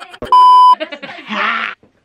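A single steady, high bleep tone lasting about half a second, starting about a third of a second in. It is an edited-in censor bleep laid over the soundtrack, and laughing voices follow it.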